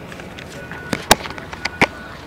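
Handling noise from a phone camera being swung about: four short sharp knocks and clicks in the second half, the second one the loudest.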